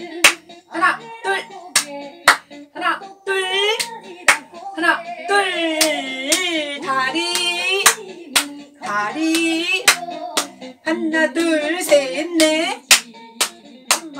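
Sharp hand claps, about two a second, keeping time with an upbeat Korean song with a sung melody.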